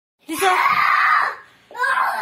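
A child screaming loudly for about a second, then a voice starting up again just before the end.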